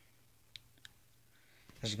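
Two short clicks of a computer mouse button, about a third of a second apart, over a faint steady low hum; a man's voice starts near the end.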